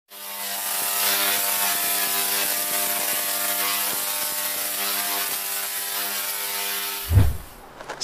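Channel intro logo sound effect: a steady crackling hiss over a held drone of several tones. It ends a little after seven seconds in with a short, deep boom that fades away.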